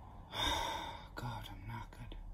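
A man's loud breathy gasp or sigh about a third of a second in, followed by a few quieter breaths: a man still out of breath after hard sprint intervals on an exercise bike.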